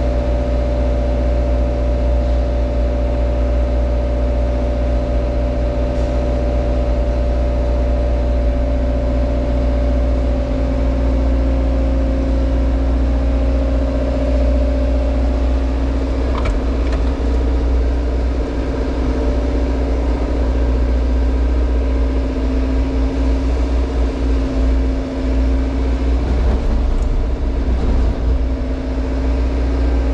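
JCB Hydradig 110W wheeled excavator's diesel engine and hydraulics running as a steady drone, heard from inside the cab while the boom is worked. The drone wavers a little a few seconds before the end, and a few faint clicks come about halfway through.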